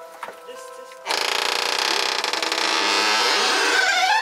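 Old wooden door being swung open, its hinges giving one loud creak that starts about a second in and lasts about three seconds, rising in pitch near the end.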